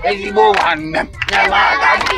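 A group of children shouting and chanting a native song together, several voices at once.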